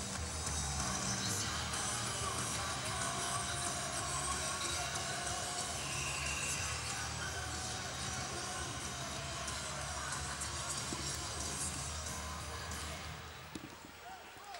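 Music over the loudspeakers of an ice hockey arena during a stoppage in play, with a steady bass; it fades down near the end.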